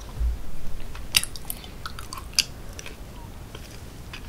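Close-miked chewing of a mouthful of cheese-sauced loaded fries with the mouth closed: soft wet mouth sounds with a few sharp clicks, the clearest about a second in and about two and a half seconds in. A soft low thump comes right at the start.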